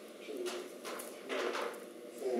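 Soft, indistinct speech in short phrases.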